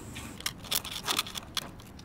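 Irregular light clicks and scratches of needles picking and scraping at dalgona honeycomb candy in its tin, the brittle sugar crackling as shapes are carved out.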